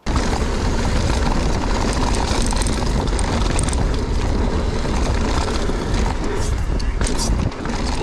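Mountain bike rolling down a dirt trail: a steady rush of wind on the microphone and tyre noise, with a few sharp clicks near the end.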